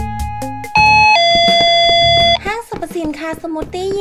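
Electronic two-tone shop door chime: a higher note, then a lower held note, the entry chime signalling that customers have walked in. Light guitar music plays before it, and a high-pitched greeting voice follows.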